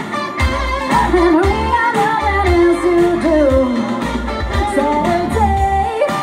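Live rock band: a woman singing a gliding melody over distorted electric guitar, with bass and drums pulsing in a steady beat.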